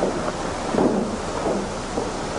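Soft shuffling and chair noises of several people sitting down at a table, over a steady hiss.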